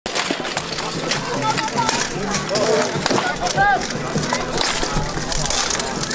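Axes and other weapons striking steel plate armour and helmets in full-contact armoured combat, a run of many sharp metal clanks, with voices shouting.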